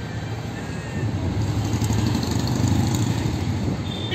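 Street traffic noise: the low rumble of a passing motor vehicle's engine, building up over the first few seconds and easing slightly near the end.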